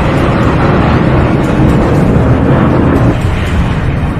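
Jet aircraft engines running at high thrust as the craft lifts off and flies, a loud, steady rush of noise that eases slightly about three seconds in.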